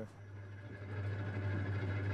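Diesel engine idling: a steady low hum that grows louder as it fades in.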